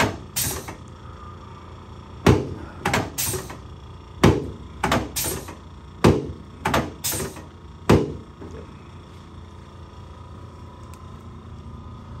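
About a dozen sharp thumps, many in quick pairs, over the first eight seconds: a padded chiropractic adjusting table taking a series of fast downward thrusts as the chiropractor adjusts the patient's pelvis, sacrum and lower back.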